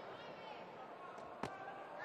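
A single sharp smack of a boxing glove landing a punch about one and a half seconds in, over a low murmur of faint crowd voices in the arena.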